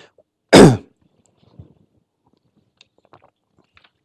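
A man coughs once, loud and short, about half a second in; the rest is near silence with a few faint small noises.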